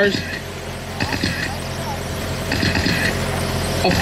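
Radio-controlled dirt-oval sprint cars racing laps, their motors whining and tyres running on the track in a steady haze that swells and fades as the pack circulates, over a low steady hum.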